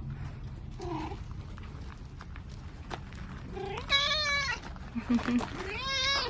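Domestic cat meowing: a faint short call about a second in, then two clear meows, one about four seconds in and an arching one near the end.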